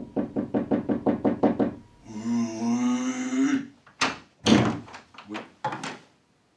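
Rapid knocking on a door, about seven quick knocks a second for nearly two seconds. It is followed by a drawn-out voice sound and a few short, loud sounds.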